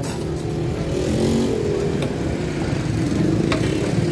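Road traffic: a motor vehicle engine running close by, a steady low rumble. A short click about three and a half seconds in.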